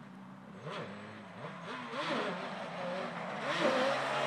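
ATV engine revving up and easing off several times, its pitch rising and falling, growing louder as the quad comes closer.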